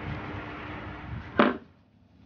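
A single sharp clack about one and a half seconds in, from small hand tools being handled, over a steady background hiss that stops right after the clack.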